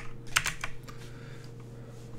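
Computer keyboard keystrokes: a short run of several key presses in the first second, typing a value into a code editor.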